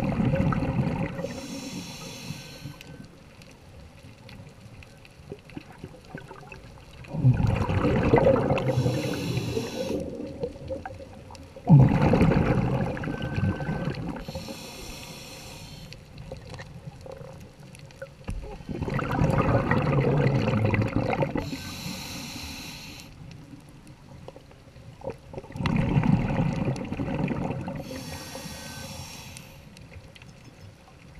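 Scuba diver breathing through a regulator underwater, a breath cycle about every six to seven seconds. Each cycle is a low bubbling rush followed by a higher hiss.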